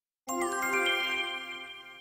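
A short chime sound effect: bell-like notes come in quickly one after another, climbing in pitch, then ring on together and fade away.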